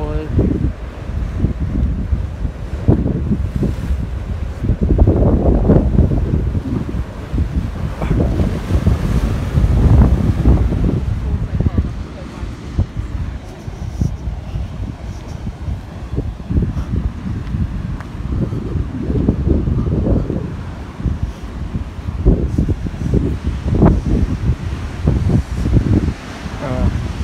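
Wind buffeting the microphone in gusts, a loud low rumble, over the wash of sea surf breaking against a stone harbour wall.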